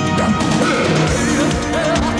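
Live rock band music with electric guitars and drums, dense with crash-cymbal hits. About a second in, a wavering melody line with a wide vibrato comes in over the band.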